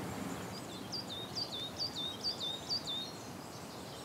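A small songbird singing a repeated two-note phrase, a higher whistled note sliding down to a lower one, about five times in a row, over a steady outdoor hiss.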